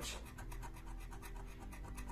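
Lotto scratch card having its silver coating scraped off with the edge of a small spoon: a quick run of light, short scraping strokes.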